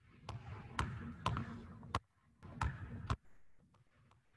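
A basketball being dribbled, about six sharp bounces roughly half a second apart, through between-the-legs and behind-the-back moves.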